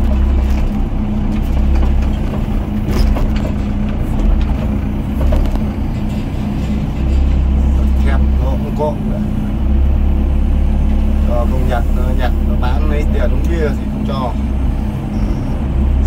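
Doosan DX55 mini excavator's diesel engine running under hydraulic load, heard from inside the cab, its low drone swelling and easing as the arm digs concrete rubble and swings to a dump truck. A few short knocks sound in the first half.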